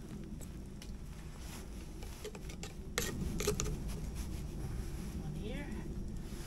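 A few short clicks and knocks of flood-light fixtures being handled and set in place, over a low steady rumble.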